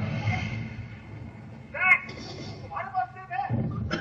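High, squeaky childlike voice of Baby Groot in two short bursts, one about two seconds in and another about three seconds in, over a low steady rumble.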